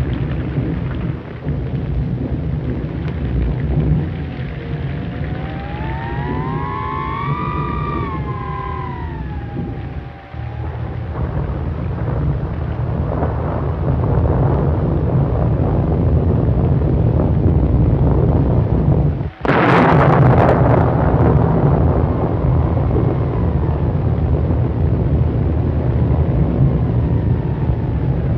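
Thunderstorm effects on an old optical film soundtrack: steady rain and rumbling under heavy hiss. A wailing tone rises and falls several seconds in, and a sudden loud thunderclap comes about two-thirds of the way through and rolls away slowly.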